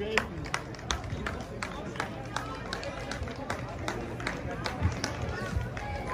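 Footsteps on paved ground, about two to three steps a second, with faint voices in the background.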